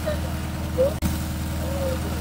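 A steady low engine hum, with water splashing as it is poured out of a large pot onto the ground, and faint voices.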